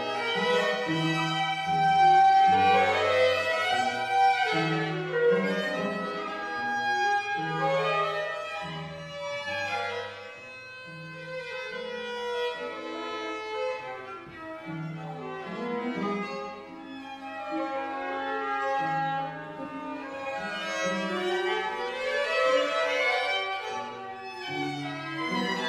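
String quartet of two violins, viola and cello playing live: a bass line of short separate notes under rising and falling runs in the higher strings. It is loudest in the first few seconds, softer in the middle, and swells again near the end.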